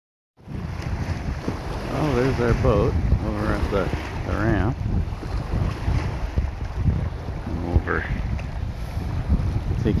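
Wind buffeting the microphone in a steady low rumble over choppy lake water, starting abruptly after a moment of silence. A voice breaks through briefly a few times.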